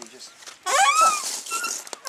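Barrel compost tumbler squeaking on its stand as it is tipped over: a wavering squeal lasting about half a second, starting about a third of the way in, then a few fainter squeaks.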